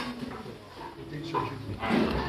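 Indistinct voices of people talking at a dining table, with a louder swell near the end.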